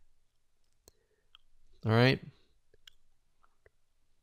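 A handful of faint, short clicks scattered through a quiet pause, with a brief spoken "All right" about two seconds in.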